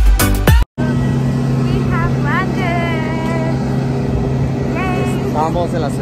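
Background music with a beat cuts off suddenly under a second in. It gives way to the steady, even hum of a jet airliner on the airport apron, with voices over it.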